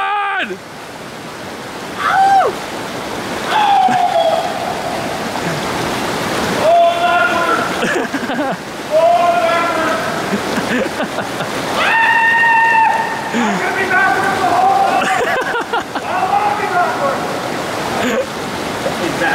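Water rushing through a flooded drainage pipe as riders slide down it on inflatable pool floats, under a string of wordless whooping yells, one of them held for about a second some twelve seconds in.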